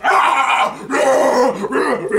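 Loud, wordless human yelling that runs on without a break as two men grapple on the floor in a struggle.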